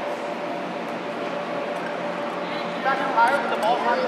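Indistinct voices carrying through a reverberant indoor arena over a steady hum. About three seconds in, high-pitched shouting voices get louder.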